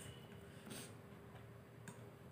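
A few faint taps and a short scrape of a metal fork on a plate of chow mein while eating.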